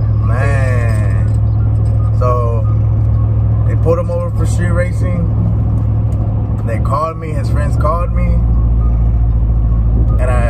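Road and engine noise inside a moving pickup truck's cabin, a steady low drone, with short snatches of talk over it. About seven seconds in the loudness dips briefly and the drone settles lower in pitch.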